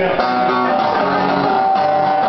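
Live punk music: an acoustic guitar being strummed, its chords changing every fraction of a second.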